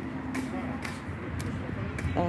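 Faint background voices over a low steady rumble, with a few light clicks.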